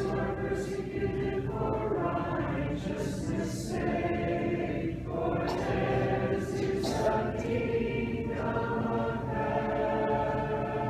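Church choir singing Orthodox liturgical chant a cappella, several voices in harmony holding sustained notes in phrases.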